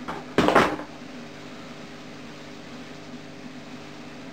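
A short, loud clatter about half a second in as an emptied cardboard parcel box is tossed aside, followed by a steady low room hum.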